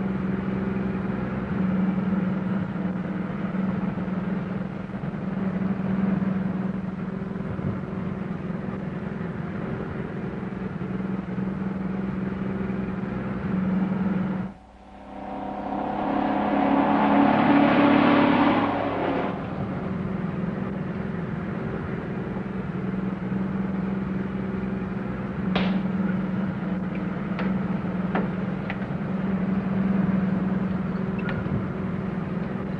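Box truck's engine running at steady road speed, a continuous drone. About fifteen seconds in the sound drops out briefly, then swells into a louder rush of the truck going by for a few seconds before the steady drone returns. A few sharp clicks near the end.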